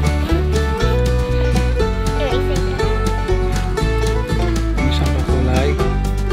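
Background country-style music with plucked strings over a steady beat and bass.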